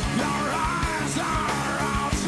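Rock band playing, with a male singer belting a high, wavering, wordless yell over drums and guitar.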